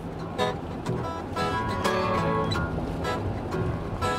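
Acoustic guitar playing the opening bars of a blues song, with strummed and picked chords, over the steady road rumble inside a moving car.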